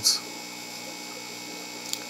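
Steady background hum with faint hiss.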